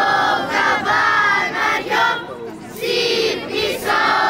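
Children's choir singing, with a short break in the singing a little past halfway.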